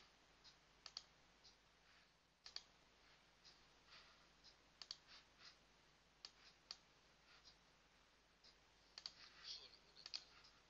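Faint, scattered clicks of a computer mouse, over a dozen spread irregularly through the quiet, with a small cluster near the end.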